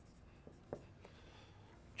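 Faint marker writing on a whiteboard, a few light ticks and strokes over quiet room tone.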